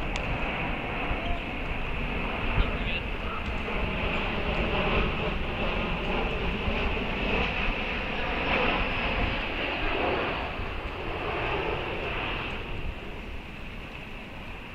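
A distant passing engine: a steady rumble that swells through the middle with a faint falling whine, then fades near the end.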